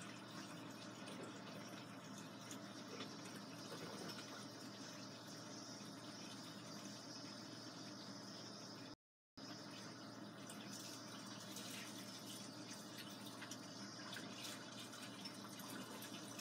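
Steady rushing background noise with no clear events, cutting out completely for a fraction of a second about nine seconds in.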